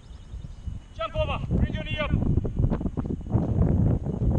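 Short unintelligible shouts about a second in, followed by low, uneven wind rumble buffeting the microphone.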